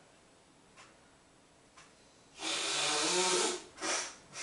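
A person with a runny nose gives one long, loud snort through it about two and a half seconds in, followed by a shorter one near the end; two faint clicks come before it.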